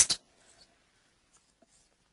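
A voice finishing a word just at the start, then near silence over the call line with a few faint ticks.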